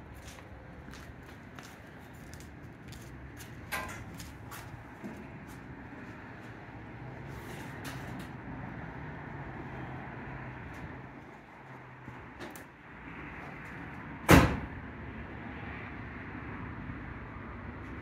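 Scattered light clicks and knocks, then one loud, sharp bang about fourteen seconds in, typical of a pickup truck's door being shut. The door belongs to a 1995 Ford F-150 about to be cold-started.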